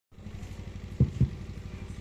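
An engine idling with a steady, evenly pulsing low throb. About a second in there are two thumps a quarter second apart, from the handheld microphone being handled.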